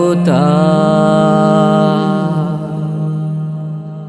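Closing held note of a Bengali Islamic nasheed sung by a man over a steady low drone: the voice slides down just after the start, then holds one long note while the music fades out.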